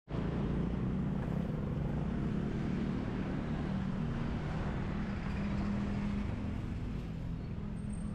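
City street traffic: a steady low engine hum from motor vehicles over an even background din.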